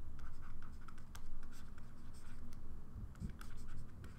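A stylus writing on a tablet screen: a run of short scratchy strokes and light taps as words are handwritten.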